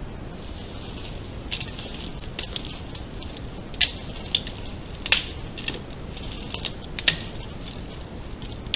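Hand trigger spray bottle squirting, a string of short, sharp squirts at irregular intervals, the loudest about four, five and seven seconds in, over a steady hiss.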